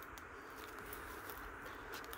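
Faint, steady outdoor background noise in brushy countryside, with no distinct event standing out.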